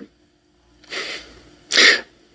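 A man sneezes once near the end, a short, harsh burst, after a quieter breathy sound about a second in.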